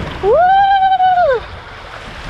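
A woman's long whoop, "woo!", held for about a second on one pitch that rises, holds and falls, over water rushing down a body water slide as she slides.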